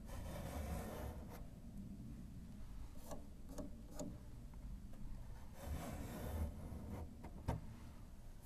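Faint rubbing and handling noises of hands working against the wooden ribs and soundboard at the back of an upright piano, with a few light clicks and knocks.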